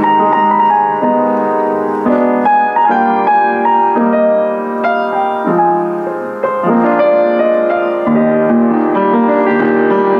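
Kawai CE-7N upright acoustic piano, built around 1982, played with the lid closed: flowing chords and melody with the notes held and ringing into one another, easing off briefly past the middle before a new chord comes in.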